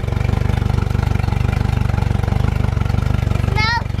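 Outboard motor idling steadily while run out of the water on a garden-hose flushing attachment, with a rapid, even exhaust pulse; it sounds good, in the owner's words.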